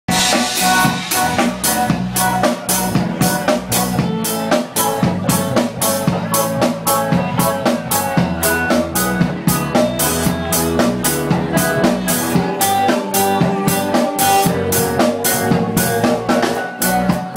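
Live band playing an instrumental passage: a drum kit keeps a steady beat with snare and cymbals, over electric bass and guitar.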